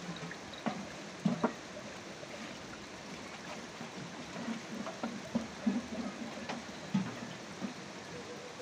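Feed being stirred in a metal bucket: liquid sloshing, with a few sharp knocks about one second in and again near the end, over a steady background hiss.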